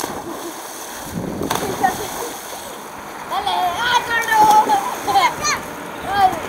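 Water splashing and churning as children jump into and swim in a swimming hole, with children's voices shouting and calling about halfway through.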